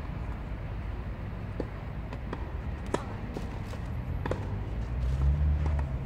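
Tennis balls struck by racquets on clay courts: several sharp pocks spread through the few seconds, over a low steady rumble that swells near the end.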